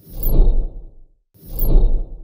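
Two whoosh sound effects, each swelling and fading over about a second with a deep bass rumble under a high hiss that sweeps downward; the second begins about a second and a half in.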